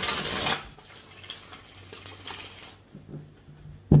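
A tarot deck being shuffled by hand: a dense rustle of cards in the first half second, then quieter rubbing and handling of the cards.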